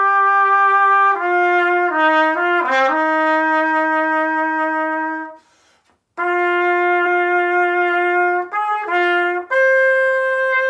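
Solo trumpet playing a phrase of long held notes, with a quick run of notes about two seconds in and a short pause around the middle. It goes on with more held notes, two short notes and then a step up to a higher long note near the end.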